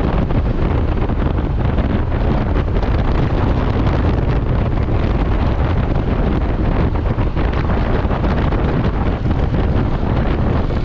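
Wind buffeting the microphone of a camera on a motorcycle riding at about 60 km/h: a loud, steady rush, heaviest in the low end.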